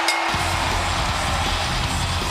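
The winner's rock entrance music, with heavy bass and drums, comes in about a third of a second in over a cheering arena crowd, marking the end of the match on the pinfall.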